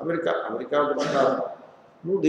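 A man's voice speaking: lecture speech only.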